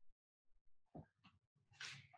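Near silence: room tone on a video-call line, with two faint, brief sounds, one about a second in and one near the end.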